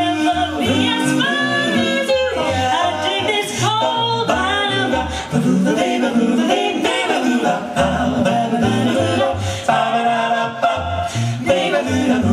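A five-voice a cappella vocal jazz group sings in close harmony. One voice carries a bass line low under the others, stepping from note to note about twice a second.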